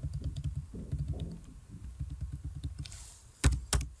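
Computer keyboard typing, a run of short key clicks, with two louder clicks close together near the end.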